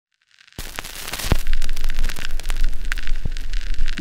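Loud crackling noise full of sharp pops over a low rumble, a crackle sound effect that cuts in abruptly about half a second in.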